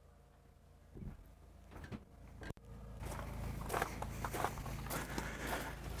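Faint footsteps with a low rumble, after a near-silent first second; a soft hiss and hum build up over the second half.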